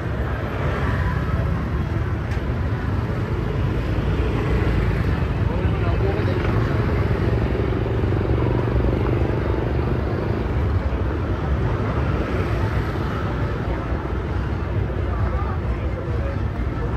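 Busy street ambience: motor scooter engines running and passing at close range, with indistinct voices of people around.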